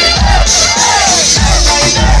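Loud dance music with a heavy bass beat, and a crowd shouting and singing along over it.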